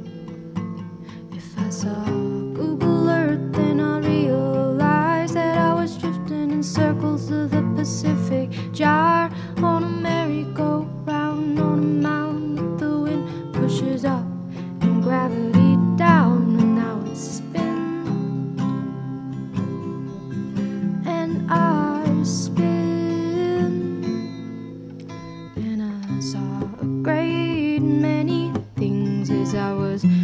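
Acoustic guitar strummed and picked, accompanying a solo voice singing a slow original song.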